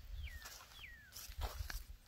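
A bird calling: two short whistled notes, each sliding down in pitch, in the first second, followed by a few light crunching steps.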